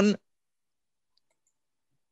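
A man's voice ends a spoken word right at the start, then near silence: the call audio drops out completely.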